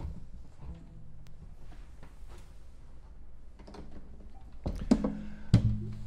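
Guitar handling noise as one guitar is put aside and a Gibson archtop picked up: scattered faint knocks and rustles, then two louder thunks near the end with the guitar's strings ringing briefly after them.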